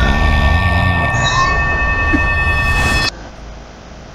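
Trailer soundtrack playing: a steady low rumble with high steady tones over it, with a man laughing through the first second; the rumble cuts off abruptly about three seconds in.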